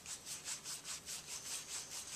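Paintbrush scrubbing paint onto a stretched canvas in quick, even back-and-forth strokes, about five a second.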